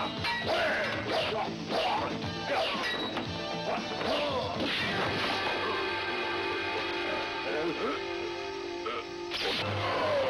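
Fight-scene soundtrack: background music running under shouted battle cries and dubbed effects of blows and blade clashes. The cries and hits are busiest in the first half and come back near the end.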